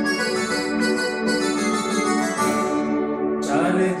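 Yamaha portable electronic keyboard played with both hands, holding long sustained chords under a melody. A voice starts singing about three and a half seconds in.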